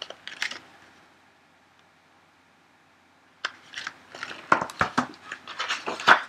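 Sheets of paper rustling and crinkling as pages of a script are turned and sorted. There is a short rustle at the start, a near-silent gap, then a longer run of rustles and light paper knocks through the second half.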